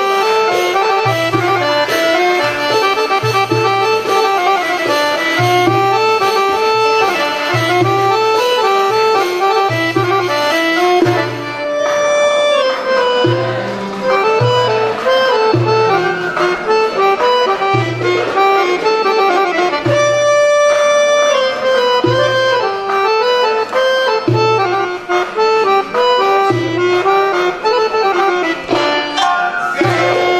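Accordion playing an Arabic melody that winds up and down in short runs, over a low bass note pulsing about once a second.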